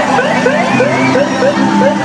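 Busy mix of crowd voices and the passing trucks of the illuminated Coca-Cola Christmas caravan, with quick rapid pitched calls over a few steady held tones.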